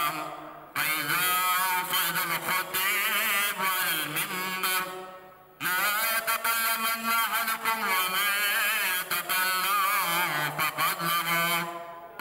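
A man's voice chanting the Arabic Eid sermon in long, melodic phrases with a wavering pitch. He pauses for breath just after the start and again about five seconds in.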